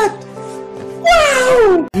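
A man's high-pitched, drawn-out shriek of laughter about a second in, one long cry falling in pitch and cut off abruptly near the end, over background music with steady held notes.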